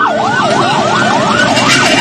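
Ambulance siren on a fast yelp, its pitch sweeping up and down about four times a second, over a noisy background.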